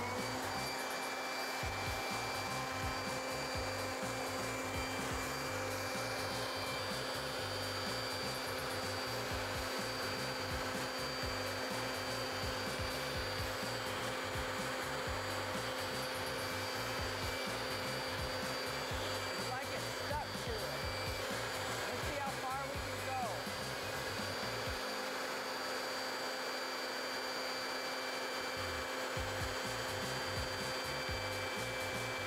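Corded electric leaf blower switched on and running steadily, a constant rush of air with an even motor whine.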